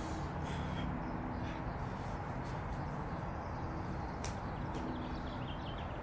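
Steady background noise with faint, scattered bird calls and a single sharp click about four seconds in.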